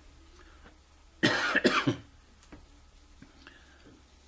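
A man coughs: a rough run of coughs lasting under a second, about a second in, followed by a few faint clicks.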